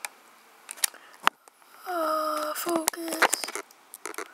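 Foil card-pack wrapper handled close to the microphone, giving a few sharp crinkling clicks, with a short mumbled voice about halfway through.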